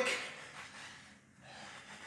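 A man breathing hard and faintly through the exertion of quick side shuffles, after the fading end of a spoken word at the start.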